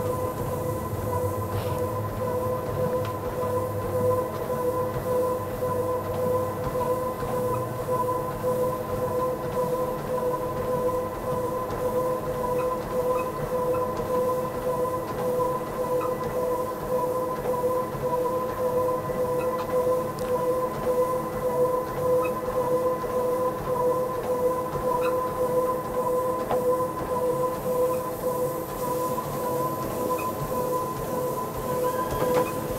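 Motorized treadmill running at a steady speed with a steady motor whine, with a person's running footfalls on the belt.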